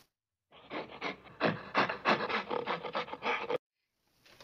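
A fast run of scratchy, rasping strokes, several a second, that starts about half a second in and cuts off suddenly near the end, framed by dead silence like an edited-in sound effect.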